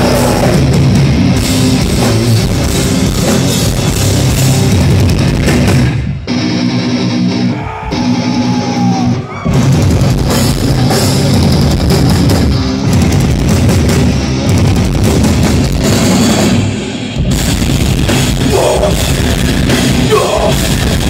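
Live hardcore band playing loud distorted electric guitars, bass guitar and drum kit. About six seconds in the drums and cymbals drop out for about three seconds and a guitar riff carries on before the full band comes back in, with another short break near the end.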